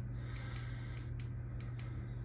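Room tone: a steady low electrical hum, with a few faint, irregular light ticks.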